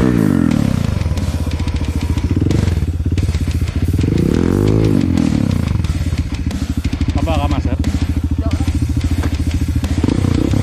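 Single-cylinder Honda dirt bike engine labouring up a steep loose-dirt climb, revving up and dropping back several times as the rear tyre spins, and chugging at low revs in between.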